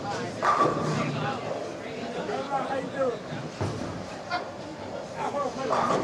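Indistinct voices talking in a bowling alley, with a single knock about three and a half seconds in.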